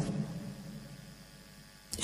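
A pause in a man's speech: his voice trails off near the start, leaving faint room tone with a low steady hum until speech resumes at the end.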